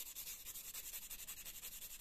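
Emery board (nail file) rubbed fast back and forth across a metal watch case, a faint, even scratching of quick strokes. The filing wears through the case's white plating to expose the metal beneath, the test for plated brass.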